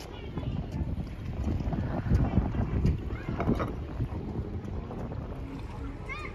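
Wind buffeting the microphone at the seafront, a low rumble that swells a little around the middle, with sea water moving and faint voices now and then.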